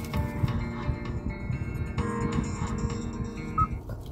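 Mobile phone ringtone playing a melody of sustained tones for an incoming call from an unknown 800 number; it cuts off shortly before the end.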